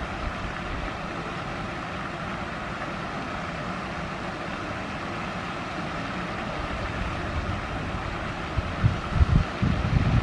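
Steady outdoor background hiss, with wind buffeting the microphone in several low gusts near the end.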